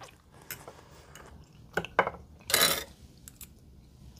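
Metal fork tapping and scraping on a ceramic plate while mashing a cooked baby Dutch potato: a few light clicks, then a short scrape about two and a half seconds in.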